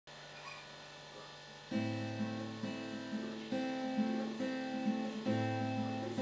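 Acoustic guitar strummed in a steady rhythm of chords, starting about a second and a half in after a quiet opening.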